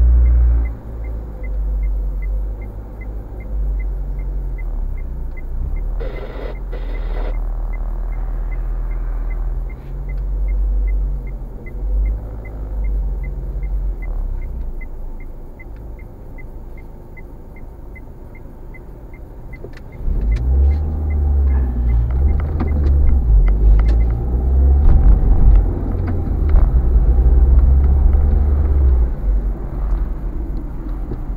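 A car engine idling, heard from inside the cabin, with a steady turn-signal ticking while the car waits to pull out. About twenty seconds in the engine gets clearly louder as the car pulls away, and the ticking stops a few seconds later.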